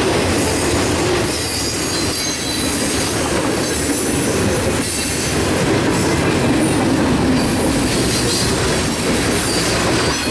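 Freight cars of a long Norfolk Southern train rolling past at speed: a loud, steady rumble and clatter of steel wheels on the rails, with a faint high squeal from the wheels.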